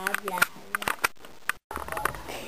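A girl's voice holding a long sung note that ends about half a second in, followed by a run of small sharp clicks. The sound drops out completely for an instant at an edit cut near the end.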